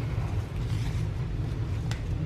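A steady low background rumble, with a faint single click of paper near the end as a small paper booklet is handled.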